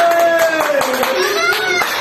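High, excited voices crying out over steady hand clapping, one voice rising in pitch near the end.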